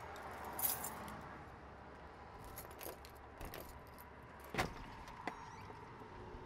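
A bunch of keys jangling, then a series of small clicks and one sharper click about four and a half seconds in, as a key is worked in a door lock.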